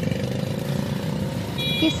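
Low, steady rumble of motor vehicle engines in traffic. Near the end comes a short high beep.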